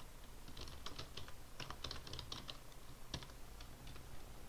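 Typing on a computer keyboard: an irregular run of light key clicks in quick clusters, with one sharper click about three seconds in.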